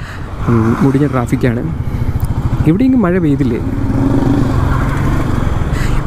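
Royal Enfield Meteor 350's single-cylinder engine running steadily as the bike is ridden, a low even exhaust beat throughout. A man's voice talks over it twice, briefly.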